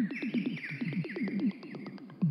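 Electronic music: a fast run of short synthesizer notes, each sliding down in pitch, with higher tones held above them.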